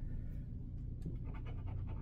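Coin scratching the latex coating off a scratch-off lottery ticket: faint, quick back-and-forth strokes, several a second, starting about a second in over a low steady room hum.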